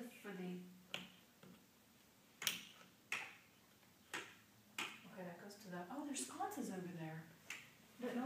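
Wall switch for a ceiling fan clicked sharply several times without the fan starting, with quiet talk underneath.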